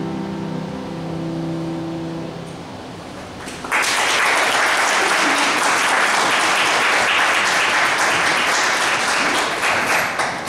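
A final chord on a grand piano ringing on and dying away, then audience applause breaking out suddenly a little under four seconds in and continuing steadily.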